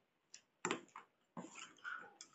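Metal spoon clicking and scraping against a steel plate in a series of short sharp strokes while pasta is scooped up, with a brief high pitched sound near the end.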